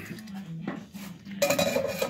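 Metal handling of a soup-can dog-proof trap: faint clinks, then a louder scraping, ringing rattle of the tin can and its trigger parts near the end.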